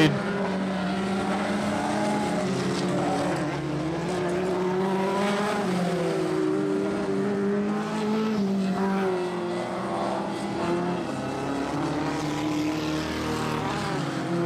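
Engines of vintage speedcars (midgets) and sprint cars running laps on a dirt oval, several engines at once, their pitch rising and falling gently as the cars work around the track. The engine note is crisp.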